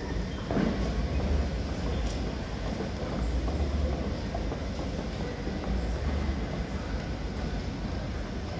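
Train sound effect played over a theatre's sound system: a steady low rumble and rattle like an underground train, swelling a few times.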